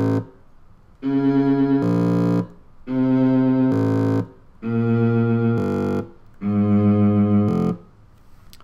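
Electronic tones from a Max/MSP sampler-cycler patch, playing a repeating pattern of held, pitched notes rich in overtones. Each block lasts about a second and a half and steps to a different pitch near its end, with short gaps between: four blocks after the tail of an earlier one.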